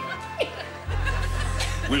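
Band accompaniment holding long low sustained notes, a new low note coming in about a second in, with a couple of short chuckles over it.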